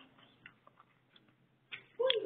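Near silence, with a faint click about half a second in and a brief faint sound near the end.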